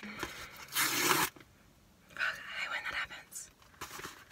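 A mailed package being torn open by hand: a loud ripping tear about a second in, followed by a pause and then more tearing and rustling of the wrapping.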